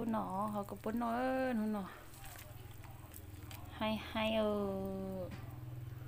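A person's voice speaking in two stretches, the first at the start and the second from about four seconds in, over a steady low hum.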